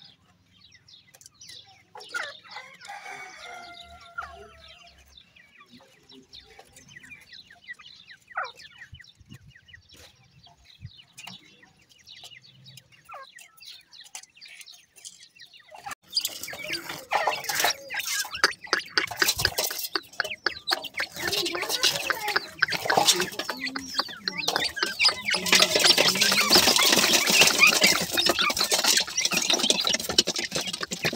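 Francolin chicks giving a few short calls, then from about halfway through a rapid, dense run of pecking taps and scratching as they crowd in to feed, growing louder and busier near the end.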